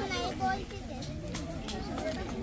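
A crowd of seated children chattering at once, many overlapping voices; one child's voice stands out briefly near the start.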